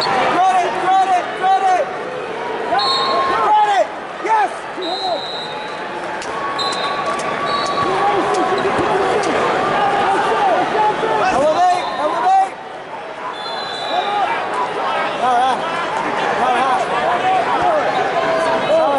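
Wrestling shoes squeaking on the mat in many short, irregular squeals as two wrestlers scramble, over steady arena crowd noise and voices.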